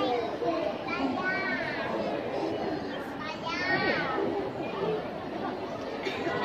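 Chatter of children's and adults' voices, with a child's high voice rising and falling about a second in and again a little past halfway.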